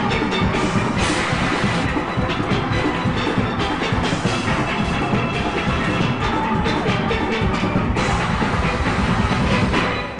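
A steel orchestra of many steelpans playing together at full volume, backed by drums and percussion.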